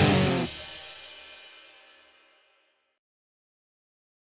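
End of a rock song: the last chord is struck, the low end cuts off sharply about half a second in, and the chord rings out and dies away by about two seconds in.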